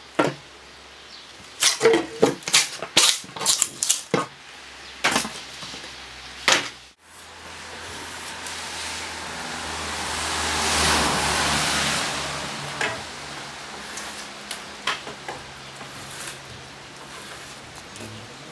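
Drawknife shaving a spruce shake clamped in a wooden shaving horse. A quick run of sharp scraping strokes in the first seven seconds is followed by a longer rasping hiss that swells and fades, with a few clicks.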